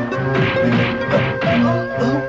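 Animated-cartoon fight sound effects: several crashing robot punch impacts in quick succession over steady background music.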